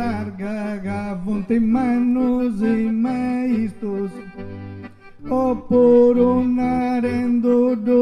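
Accordion music: a stepped melody over rhythmic bass chords, the accompaniment of Sardinian arrepentina sung poetry. It drops away briefly around the middle and comes back louder.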